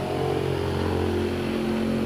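A motor vehicle's engine running steadily at an even pitch, with no change in speed.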